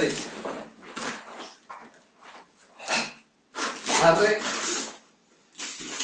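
A karateka's forceful breaths and voiced exhalations timed with the strikes and kick of a kata: a few short sharp bursts, then a longer voiced one about four seconds in.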